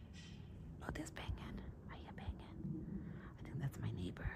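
Faint whispery voice sounds with scattered soft clicks and rustles.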